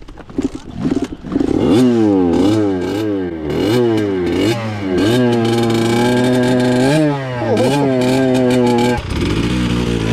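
Dirt bike engine revving hard: from about a second and a half in, the pitch swings up and down about twice a second as the throttle is worked, then holds high and steady for several seconds before dropping off near the end. The bike is under load, climbing over rocks.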